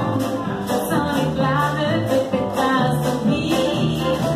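Live acoustic band: a woman singing into a microphone over an acoustic guitar and an upright double bass, with a steady beat.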